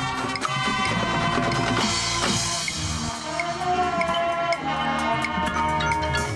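Marching band playing: brass and saxophones over a drum kit and front-ensemble percussion. About two seconds in the sound swells brightly, then the low end thins out and a held melody line carries on.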